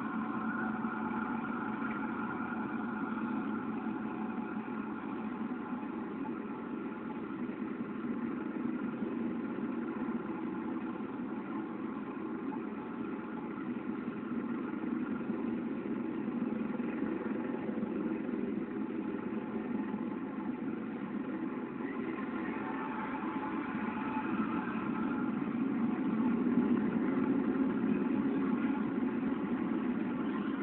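Steady low rumble of engine-like background noise, swelling louder in the last third.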